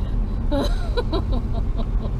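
Sports car's engine and road noise at speed, a steady low drone heard from inside the cabin on a fast track lap. A brief burst of laughter and voice comes about half a second in.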